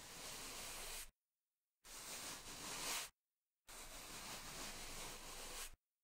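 Bristle scrub brush scrubbing in three separate strokes, a bright hissing scratch each lasting one to two seconds, with dead silence between them.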